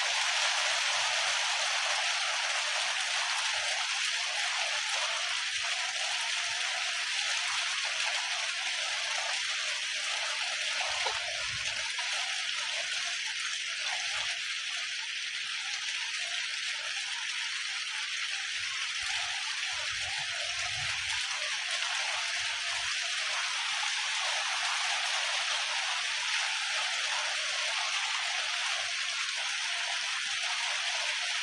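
Steady rain falling, a continuous even hiss, with a few brief low bumps on the microphone around the middle.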